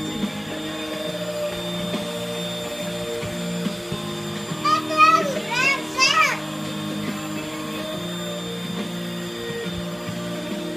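Bissell 3-in-1 corded stick vacuum running with a steady motor hum and faint high whine as it is pushed over a rug. About five to six seconds in, a toddler gives a few short high-pitched calls.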